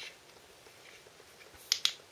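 Two sharp clicks close together near the end: a torch's push-button switch being clicked on.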